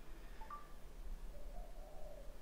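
Quiet room tone with a steady low hum, broken about half a second in by a brief faint pitched blip.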